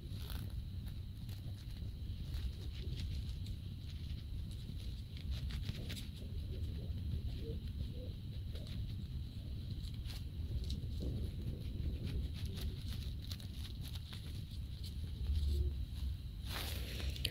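Faint rustling and small scattered clicks of yarn being hand-sewn with a needle. Underneath is a steady low background hum and a thin high whine.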